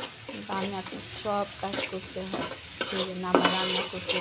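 Steel spatula stirring and scraping a spice masala around an aluminium kadai, giving repeated short pitched scrapes and clicks against the metal, over the steady sizzle of the masala frying in oil.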